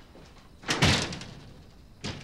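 Wooden double doors being pushed shut, closing with one loud knock about a second in that dies away quickly.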